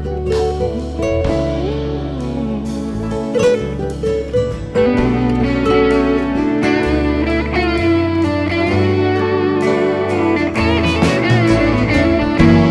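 Instrumental break of a pop ballad: a lead guitar plays bending, wavering notes over the backing band's bass and drums.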